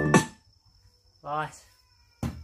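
Electronic dance track with a drum-machine beat playing from a YS A20 portable Bluetooth karaoke speaker, cutting off suddenly within the first half-second. About a second later comes one short voiced sound that rises and falls in pitch.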